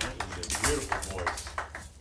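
A few people clapping, sparse and irregular, with low talk under it.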